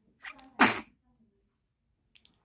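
A newborn baby sneezing once: a short catch of breath, then one sharp sneeze about half a second in.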